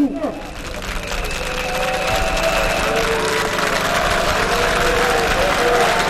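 A large group of soldiers' voices chanting together, many voices overlapping, rising in loudness over the first couple of seconds and then holding steady.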